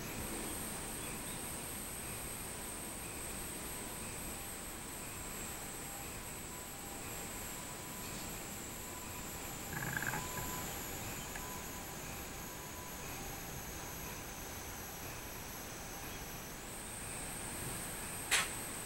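Robust cicadas (minmin-zemi) singing in the trees: a steady high-pitched drone that slowly sinks in pitch, then jumps back up near the end. A brief, lower sound cuts in about ten seconds in.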